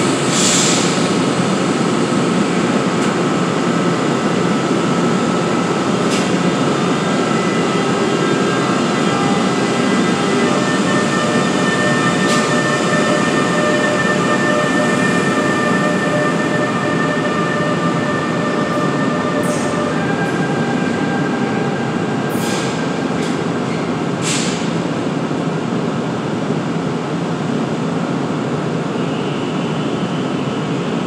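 NJ Transit ALP-46A electric locomotive and its train pulling out: a steady loud rumble of wheels on rail, with a hum of a few steady tones from the locomotive that change pitch about ten and twenty seconds in. Sharp wheel clicks and brief squeals come over the track, most of them in the second half.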